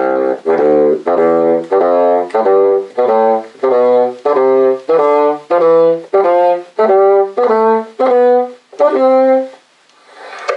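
Solo bassoon playing a warm-up scale exercise in thirds with a dotted (saltillo) rhythm: a run of separate notes, about two a second with a short break between each, stopping about half a second before the end.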